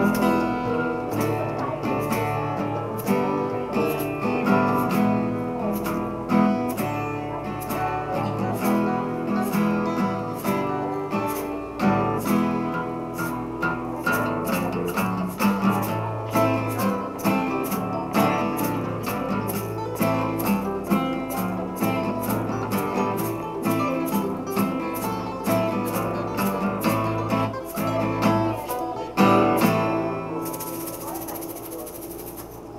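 Acoustic guitar played live in an instrumental passage, keeping a steady rhythm, with a louder chord near the end.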